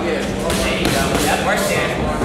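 Boxing gloves thudding on gloves and headgear during sparring, several quick hits, over people's voices in the gym.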